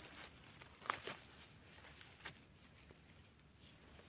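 Near silence with a few faint rustles and soft clicks, from pine-needle litter and mushrooms being handled on the forest floor.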